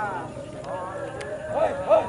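Men shouting short, high, repeated calls to bring a racing pigeon down to the landing spot. The calls are faint at first and come stronger and quicker, about three a second, in the last half-second.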